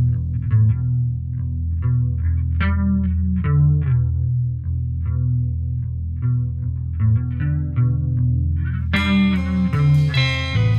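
Rock band's recorded track: electric guitar with a chorus effect picking single notes over a steady bass line. About nine seconds in, a fuller, brighter guitar sound comes in and thickens the mix.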